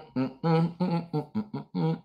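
A man's voice humming a short wordless tune under his breath, a run of quick notes.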